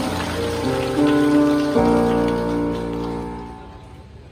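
Electronic keyboard playing the sustained closing chords of a song's accompaniment. The chord changes about a second in and again just before the two-second mark, then the sound fades out near the end.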